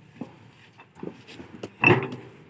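Fly ash bricks knocking against one another as they are handled and stacked for loading: a few light clacks, then one loud, ringing clack near the end.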